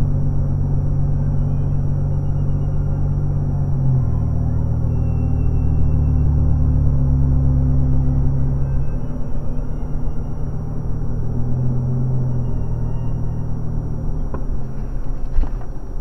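Steady low rumble of a car driving at road speed, heard from inside the cabin through a dashcam. Near the end comes a sudden bang as an oncoming car that has crossed into its lane hits it.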